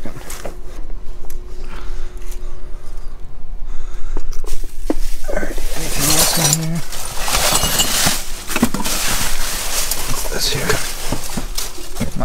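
Rummaging through dumpster trash: stiff styrofoam packing sheets, plastic bags and cardboard being shifted by hand, rustling and scraping, loudest from about four seconds in.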